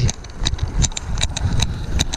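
Riding noise from an electric-assist mountain bike moving off across a road: a low, uneven rumble of wind on the handlebar camera's microphone, with light irregular clicks and rattles from the bike.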